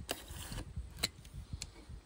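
Utility knife cutting open a cardboard shipping box along its taped edge, with a few sharp clicks and scrapes.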